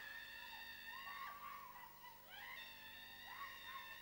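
Faint, high-pitched wailing voices in the background: a couple of long held cries and several short cries that rise and fall.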